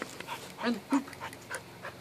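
Border Collie panting rapidly in short breaths, about three or four a second.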